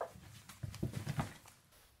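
Rustling and soft bumps of a person moving right beside the microphone as she sits back down, with a few light knocks from handling a paperback book.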